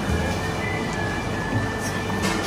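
Steady background noise with soft background music under it, with no speech.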